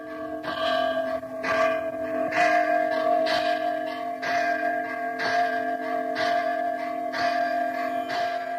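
A bell struck about once a second, each stroke ringing on so that the tones overlap into a steady hum.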